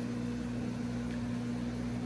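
Steady low electrical hum under a soft even hiss, from the aquarium's circulation pump and filtration running.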